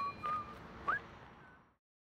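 A person whistling a few notes, one sliding quickly upward about a second in, over the fading ring of a bell-like ding; the sound fades out to silence about three-quarters of the way through.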